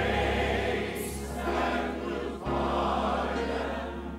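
A large mixed choir of voices singing a gospel hymn together in slow, long held notes over a steady low accompaniment.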